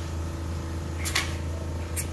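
Pneumatic air cylinders of a homemade piano-playing finger rig being fired: a short hiss of exhausting air about halfway through, then a sharp clack near the end, over a steady low hum.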